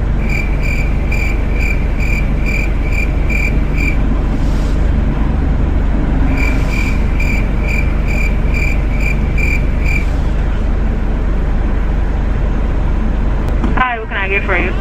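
A high electronic beeper sounding about three times a second, in two runs of about four seconds with a pause of about two seconds between them, over the steady low hum of a car engine idling.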